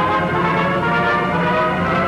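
Orchestral background music with brass playing held notes.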